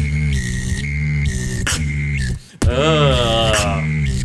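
Solo vocal beatboxing: a deep, sustained vocal bass with a high, held whistle-like tone over it, cut by sharp clicks. It breaks off briefly about two and a half seconds in, then comes back with a wavering pitched sound that rises and falls.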